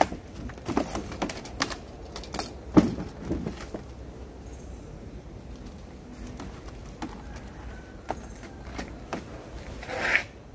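Irregular clicks, taps and rustles of tools and a plastic drain fitting being handled on a plastic tarpaulin liner, with the sharpest click a little under three seconds in.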